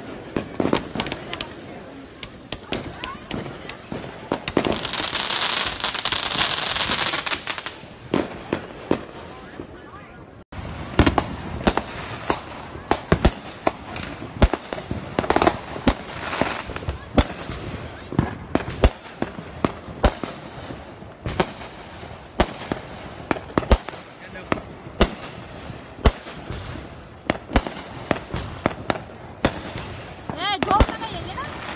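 Consumer fireworks launched from the ground going off in an irregular run of sharp cracks and bangs, with a loud hissing spray about five to eight seconds in. The sound breaks off abruptly about ten seconds in, then the bangs carry on.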